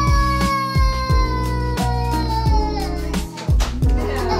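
A toddler's long, high whining cry that holds one note for about three seconds and slowly falls in pitch, over background music with a steady beat.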